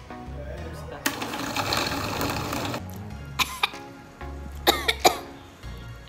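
Oster Duralast Classic glass-jar blender starting about a second in and running for about two seconds, blending a green smoothie of liquid and leafy greens, under background music.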